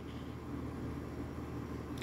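Quiet room tone: a faint steady low hum with light hiss and no distinct events.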